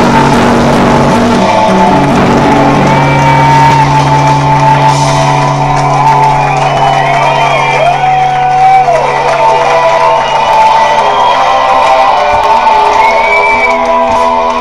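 Rock music with guitar: a low bass note is held through most of the passage, with a melodic line above it that bends and glides in pitch.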